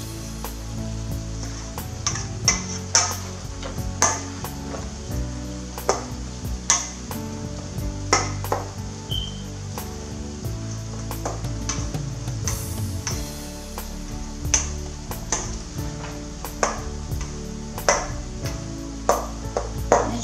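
Plastic rice paddle knocking and scraping against a stainless steel mixing bowl while steamed sticky rice and corn are stirred, a sharp clack every second or two.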